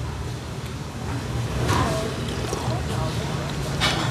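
Indistinct voices over a steady low rumbling background, with one short sound from a voice a little under two seconds in and a brief sharp sound near the end.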